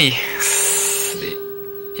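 Philips 14CN4417 CRT television's speaker: a brief burst of hiss, then a steady 400 Hz test tone as the set picks up the colour-bar test signal.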